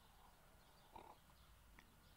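Near silence: a faint background hum, with one faint short sound about a second in.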